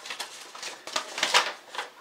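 A sheet of paper rustling as it is handled, in a run of short crackles.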